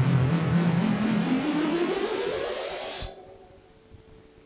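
A loud whooshing, engine-like sound whose pitch climbs steadily, cut off abruptly about three seconds in, as if played back from a device and stopped.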